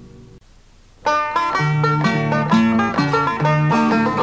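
The last ringing chord of the previous song dies away, a short pause follows, then about a second in a banjo and acoustic guitar start a lively folk instrumental intro, the bass notes alternating between two pitches.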